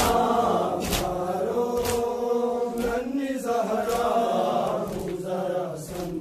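A crowd of men chanting a Muharram noha (mourning lament) together, with sharp slaps of hands striking bare and clothed chests in unison about once a second, keeping the beat of the lament.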